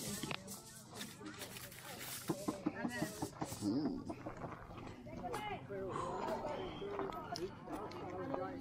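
People talking in the background, with scattered clicks and rustling close to the microphone.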